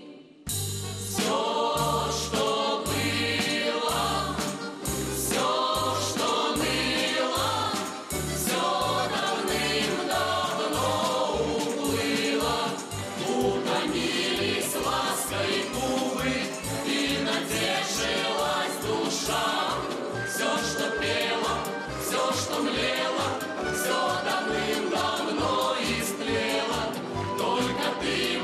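After a brief pause, a lively folk song starts about half a second in. A mixed choir sings in chorus over instrumental backing with a steady bass beat of about two beats a second.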